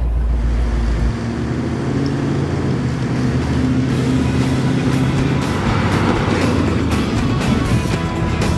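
Engine and road noise from inside the 1964 Ford Thunderbird convertible, with a low rumble from its 390 V8 through glasspack mufflers, cut off abruptly about a second in. A music track follows, mixed with car engine sound.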